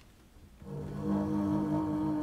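Double bass played with the bow: after a short quiet moment, a long sustained bowed note comes in about half a second in and is held steady.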